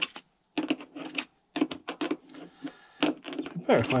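Metal clicks and clinks from a spanner being worked on a bolt, tightening a battery earth cable, in several short runs.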